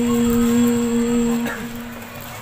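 A boy's voice, amplified through a microphone, holding one long steady note in melodic Quran recitation (tilawah), cut off about one and a half seconds in.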